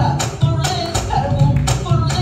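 Live Peruvian marinera limeña played by a criollo band: a woman singing over acoustic guitars, electric bass and cajón, with sharp percussive strikes cutting through the music.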